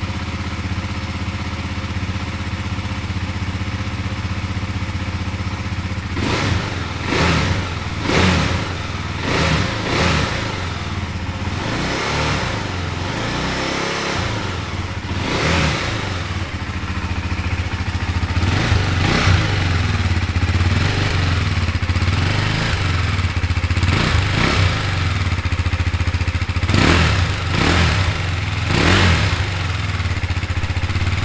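2018 KTM Duke 390's single-cylinder engine idling steadily. From about six seconds in the throttle is blipped again and again, each rev rising briefly and falling back to idle.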